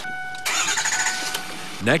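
Biodiesel-fuelled pickup truck engine cranked with the ignition key and starting, with a burst of engine noise about half a second in.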